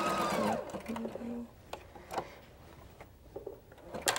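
Sewing machine motor running at a steady whine while satin-stitching a zigzag over a cutwork bar, then winding down and stopping about half a second in. Afterwards only a few faint clicks from handling the machine and fabric.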